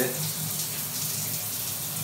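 Shower water running steadily, an even hiss, with a low steady hum underneath.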